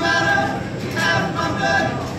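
Male voices singing together live, several voices at once.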